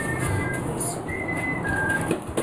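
A few high, steady whistle-like notes, each about half a second long, stepping between pitches like a simple tune.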